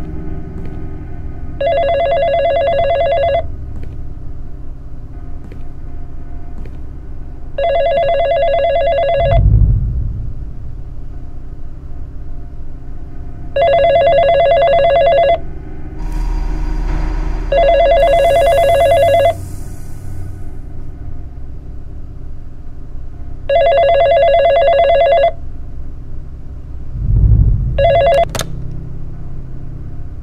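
Landline desk telephone ringing in bursts of about two seconds, six times, over a low drone. Two deep thuds fall in the gaps. The last ring is cut short near the end as the handset is lifted.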